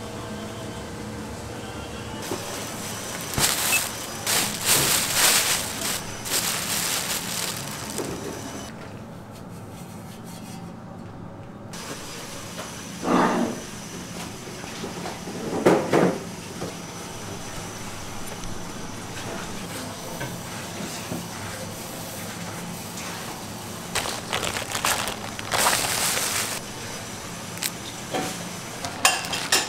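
Food-preparation sounds over steady kitchen background noise: dry rice flour poured and rustled in a stainless-steel bowl, and gloved hands mixing it, with several brief louder bursts of rustling noise and two short sharper sounds in the middle.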